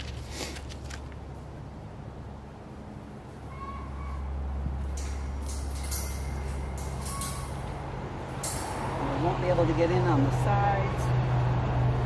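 Crinkly rustling of white garden row-cover mesh being pulled and tucked over a raised bed, in short bursts about half a second in and again around five to eight seconds in. A steady low drone runs underneath and grows louder in the second half.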